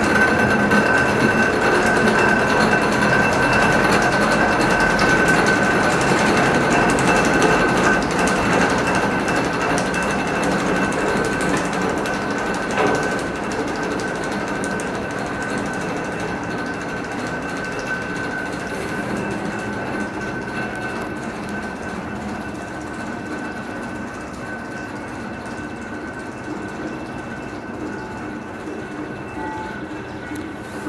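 Fribourg water-ballast funicular running on its track: a steady rattle of steel wheels, rack gear and cable rollers with a high steady whine, fading gradually as the car draws away down the slope.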